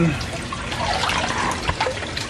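Water splashing and trickling as a koi is handled in a net and released by hand into an aquarium.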